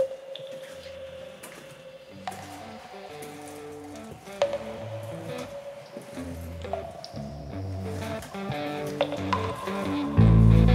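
Quiet, sparse opening of a lo-fi rock demo recorded at home: slow, changing low notes under a held higher tone, with a few sharp clicks, gradually getting louder.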